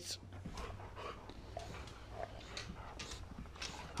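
Two dogs play-wrestling on a hardwood floor: faint, scattered clicks and scuffles of claws and paws, over a low steady hum.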